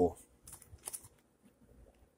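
A page of a ring binder with clear plastic sheet protectors being turned: a few short, soft rustles of plastic about half a second to a second in.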